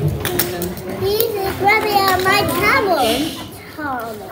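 Young children's voices, several at once, with some long drawn-out notes, fading near the end.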